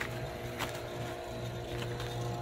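Pool pump's electric motor running with a steady hum, with a few faint clicks on top.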